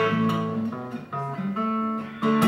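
Acoustic guitar being strummed, chords ringing, with a few fresh strums about a second in.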